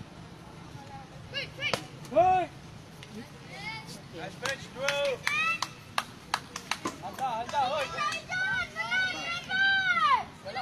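Young players and spectators at a youth baseball game shouting and calling out in high voices, the shouts growing denser in the second half. Several sharp knocks stand out in the middle.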